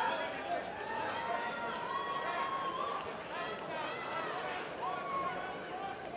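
Boxing-arena crowd: several voices calling out and chattering over one another, with drawn-out shouts rising and falling in pitch.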